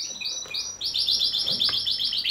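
Canary singing: a few short high notes, then a fast, even trill of repeated notes, about ten a second, through the second half.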